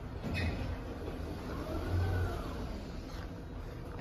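Schindler 5500 traction elevator arriving and its car doors opening: a clunk near the start, then the door operator's motor rumbling with a whine that rises and falls in pitch as the doors slide open, over a steady cab hum.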